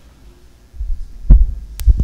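Microphone handling noise: a hand grabbing a stand-mounted microphone, giving low rumbling thumps from about halfway in, the loudest a little past one second, then a sharp click and another thump near the end.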